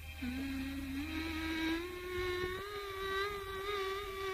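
Opening of a 1980s Malayalam film song: a single held melodic line that rises in steps and then settles into a long note with a slight waver, over a faint low hum.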